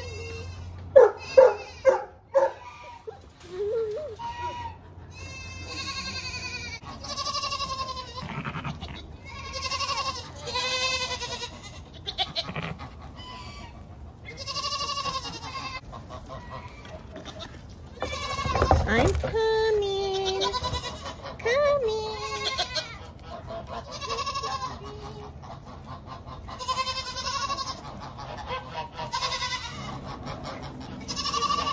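Nigerian Dwarf goats bleating over and over, calling for their morning feed. A few sharp knocks come near the start, and a brief bump about two-thirds of the way through.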